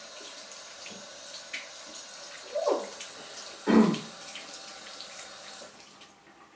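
Kitchen tap running steadily into a sink, turned off near the end. Two short, louder noises come in the middle, the second the loudest.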